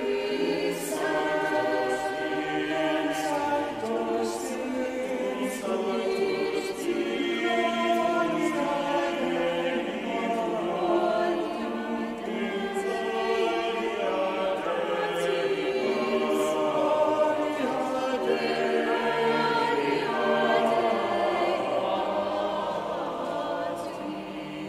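A choir singing in many-part harmony with no clear accompaniment, sustained sung chords that shift every second or two throughout.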